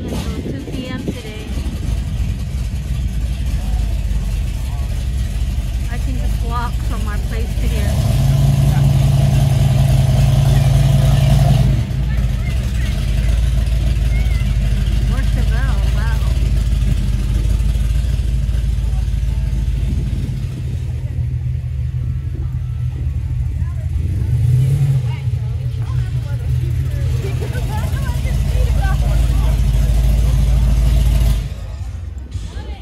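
Low, steady rumble of a car engine running. Its note rises and holds louder for about four seconds, about eight seconds in, and swells briefly in a short rev near the end, under the faint chatter of a crowd.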